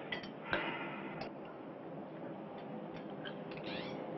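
Faint, irregular clinks and taps of cutlery on dishes over a low steady hum, sharpest in the first second, with a brief rising squeak near the end.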